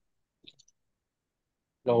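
Near silence on the call audio, broken by one faint, very short click about half a second in; a voice starts a word just before the end.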